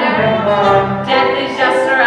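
A solo female voice singing a musical-theatre song, holding notes with vibrato, over accompaniment with strings.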